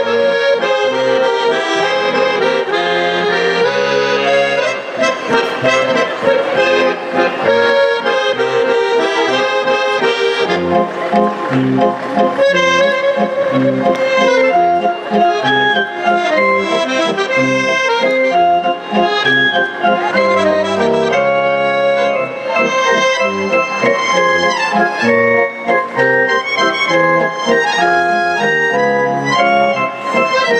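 Accordion playing a traditional folk dance tune, a melody over changing bass notes.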